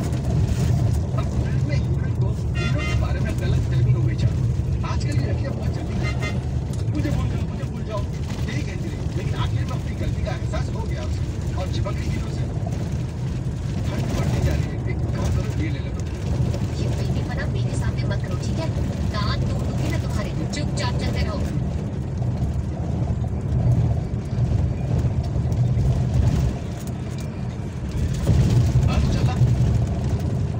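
Steady low rumble of a vehicle driving, with people's voices over it.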